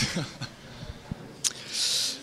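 A small click, then a quick breath drawn in near the end, close to the microphone.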